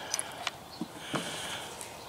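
A dog sniffing at the ground, a few short, faint sniffs.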